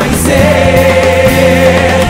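Live gospel worship music: several voices singing a long held note over a band with bass and guitars.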